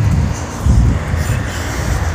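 Outdoor street noise: a loud, uneven low rumble that swells about two-thirds of a second in, with wind buffeting the microphone.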